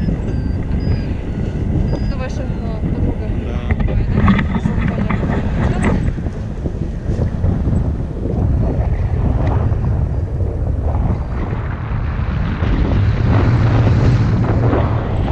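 Airflow buffeting the camera microphone on a tandem paraglider in flight, a loud, uneven rushing that gusts and grows louder near the end.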